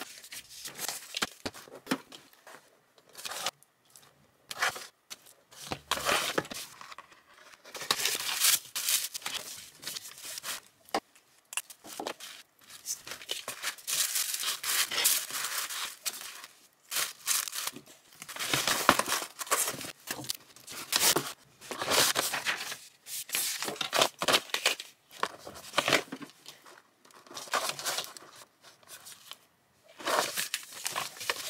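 Tissue paper crinkling and rustling and a cardboard mailer box being handled, in many irregular short bursts, as small boxed items are wrapped and packed.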